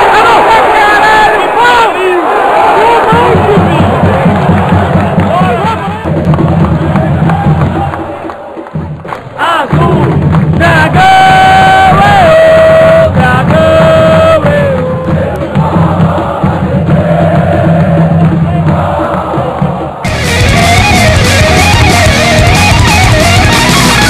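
Football crowd shouting and cheering a goal, then singing over music with long held notes. About two seconds before the end a loud electric-guitar rock track starts.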